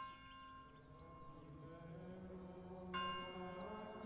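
A bell struck and ringing as it fades, struck again about three seconds in. A low, sustained chanting voice comes in beneath it, with small birds chirping faintly.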